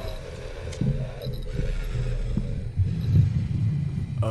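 Low, uneven rumbling drone from an animated horror film's soundtrack, swelling and pulsing, with a faint steady tone above it.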